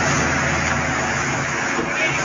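A pickup truck driving past on a town street, its engine and tyres heard as a steady noise with a low hum that eases off slightly as it goes.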